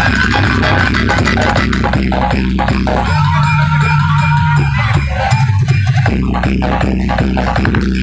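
Loud dance music with a heavy bass line, played through a large outdoor DJ speaker-box setup. A few seconds in, the deep bass drops out for about three seconds, then comes back in.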